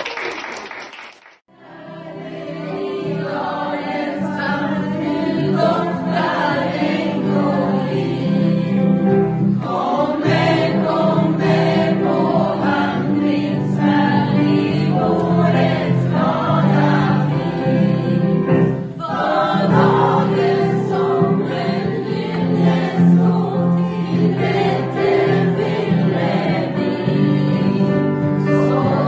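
A group choir singing together, accompanied on a digital piano, starting about a second and a half in and growing louder over the next few seconds. A brief burst of noise comes just before it.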